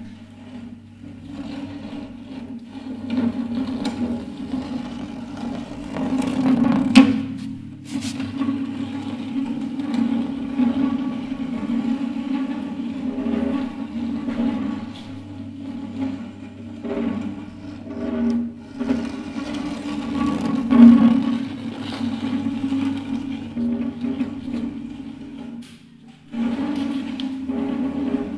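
Nylon-string classical guitar played as an object, its headstock scraped and pushed across a chipboard floor so that the body and strings sound a sustained low drone under a rough scraping texture. Sharp knocks stand out about seven and eight seconds in.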